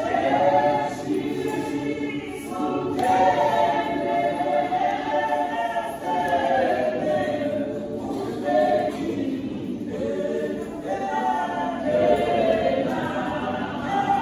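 A women's choir singing a hymn in harmony, unaccompanied, in phrases of a few seconds each.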